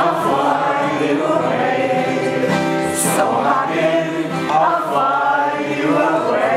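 A group of voices singing a song together, several voices at once like a small choir.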